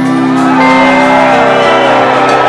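Live rock band playing loudly, held chords under a line that bends up and down in pitch, recorded on a small camcorder's microphone.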